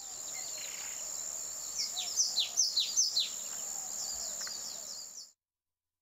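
Outdoor ambience: a small bird sings a quick run of about eight descending chirps over a steady high-pitched hum. The sound cuts off suddenly about five seconds in.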